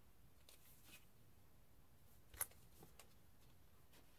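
Near silence: room tone with a few faint handling noises of a cardboard LP jacket being lowered, and one short sharp tick a little past halfway.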